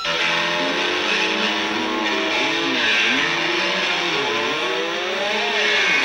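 A garage-punk band's distorted electric guitars playing loud and sustained, with the notes swooping down and back up every second or two over a noisy wash.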